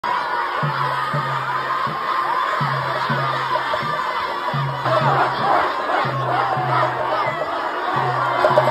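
A crowd shouting and cheering, many voices at once. A low beat repeats about twice a second underneath.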